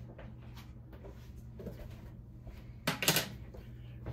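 Quiet kitchen with a steady low hum, broken about three seconds in by one short handling noise, like a cupboard, drawer or container being worked.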